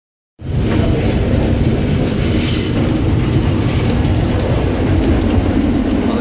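Subway train running on an elevated track, heard from inside the car: a steady, loud rumble of wheels on rail with a thin high whine above it, starting about half a second in.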